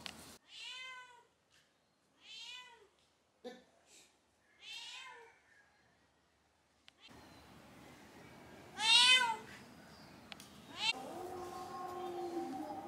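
A cat meowing four times, each call rising then falling in pitch; the fourth, about nine seconds in, is the loudest.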